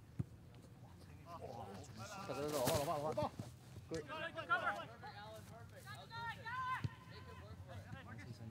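Players calling and shouting across an open soccer pitch, loudest about two to three seconds in, with a couple of short sharp knocks, one near the start and one near the end.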